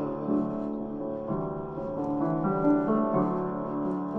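Grand piano playing a slow, soft passage of held chords, the notes changing about once a second.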